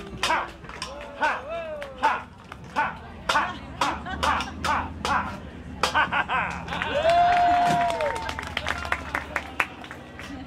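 Shouted vocal exclamations mixed with sharp claps scattered through, a quicker run of claps about six seconds in, and one long held call around seven seconds.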